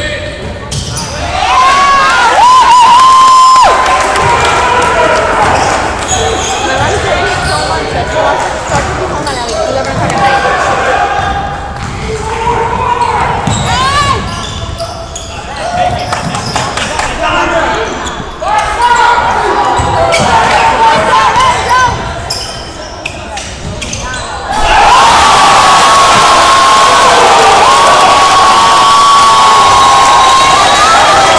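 Basketball game in a gym: a ball dribbling on the hardwood, shoes squeaking and spectators' voices. About 25 s in, the crowd breaks into loud, sustained cheering.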